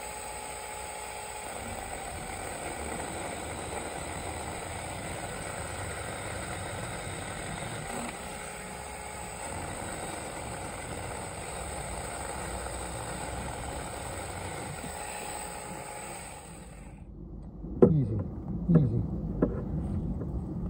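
Saker mini cordless electric chainsaw running steadily as it cuts through a dead branch, its motor giving a constant whine. It stops abruptly about seventeen seconds in, and a few sharp knocks and rustles follow.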